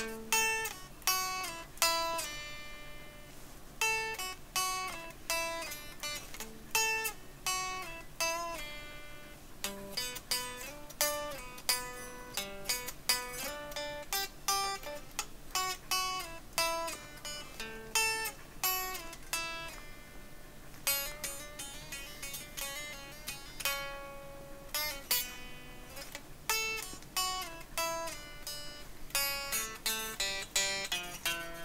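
Guitar played solo, a run of picked single notes and chords that each ring out and fade, forming a loose improvised phrase with a few brief pauses.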